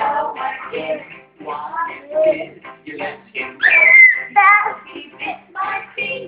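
Music with singing voices. A loud high note falls in pitch about three and a half seconds in.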